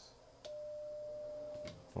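Icom IC-7300 CW sidetone: one steady beep about a second and a quarter long, with a click as it starts and stops. It sounds while the transceiver keys a carrier on 20 meters to read the antenna's SWR.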